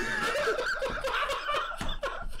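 Two men laughing.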